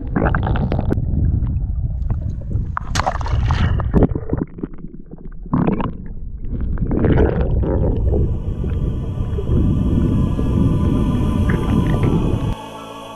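Water rushing and gurgling around a submerged camera, a dense low rumble with irregular louder surges. Faint music comes in during the second half.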